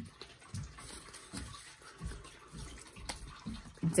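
Soft rustling of paper banknotes being handled and slid into a clear plastic binder pocket, with a couple of faint clicks.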